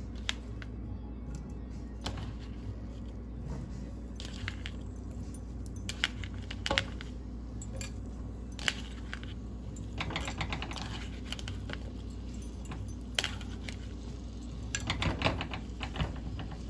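Diced potatoes dropping and clattering into a nonstick frying pan of oil in scattered short knocks, with a cluster near the end, over steady background music.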